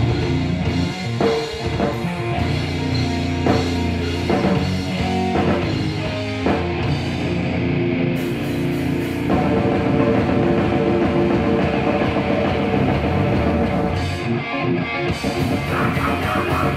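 Live heavy metal band playing an instrumental passage: distorted electric guitars, bass and a drum kit. About nine seconds in, the riff changes to a denser, fuller section.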